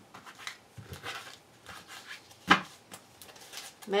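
Tarot cards being gathered and handled on a cloth-covered table: soft rustles and light clicks, with one sharp tap about two and a half seconds in.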